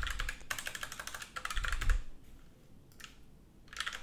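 Typing on a computer keyboard: a quick run of keystrokes for about two seconds, a pause with one short burst of keys, then typing again near the end.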